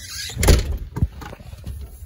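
A house door being handled by its doorknob as someone goes out: a loud thump about half a second in, then a lighter knock about a second in.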